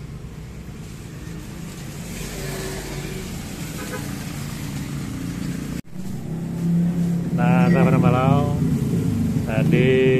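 Road traffic running close by: car and motorbike engines passing, with a steady low hum that builds slowly. It breaks off sharply about six seconds in, then comes back louder in the second half.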